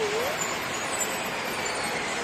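Steady road-traffic noise from a busy city-centre street, with a bus driving past below.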